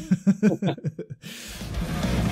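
Laughter in short quick bursts, then heavy metal music with electric guitar coming in about one and a half seconds in and growing louder.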